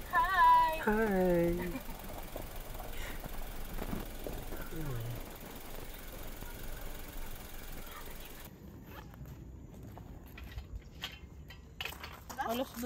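A person's voice: one drawn-out call that wavers and falls in pitch in the first two seconds, then a faint low voice about five seconds in, over steady outdoor background noise. Light clicks and knocks follow in the last few seconds.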